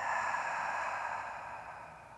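A woman's long exhale through the open mouth, a breathy sigh that fades away over about two seconds: a complete out-breath in a deep-breathing exercise.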